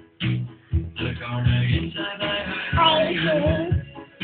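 A voice singing a melody in short phrases, with a long wavering held note about three seconds in.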